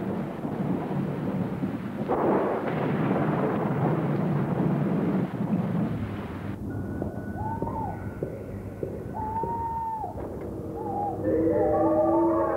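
Film soundtrack: a loud, rough rumbling noise that cuts off abruptly about six and a half seconds in. Sparse gliding, wavering electronic-sounding tones follow over a held higher tone, and they build into layered eerie music near the end.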